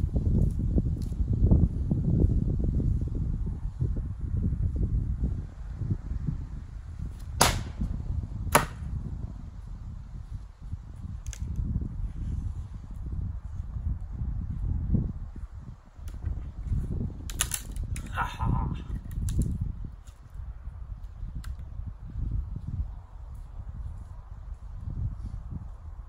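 Sharp wooden knocks from a throwing hammer-axe and a wooden plank at a log-slice target: two knocks about a second apart a third of the way in, then a quick cluster of knocks about two-thirds of the way in, over a low rumble.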